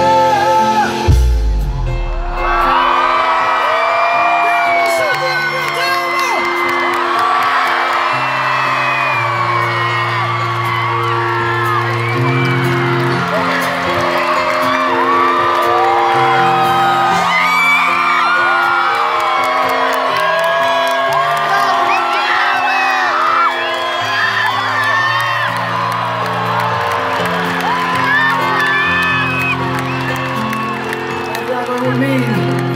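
Live band holding slow, sustained chords while a stadium crowd cheers, whoops and sings along. A brief low thump comes about a second in.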